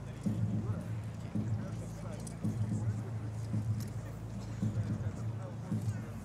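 Indistinct murmur of voices over a steady low hum.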